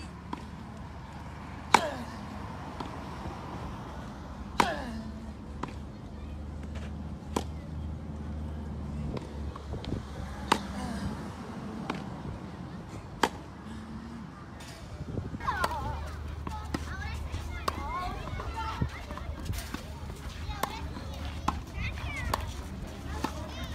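Tennis rally on a grass court: sharp racket-on-ball hits about every three seconds, with fainter hits in between. Children's voices chatter in the background, more so in the last third.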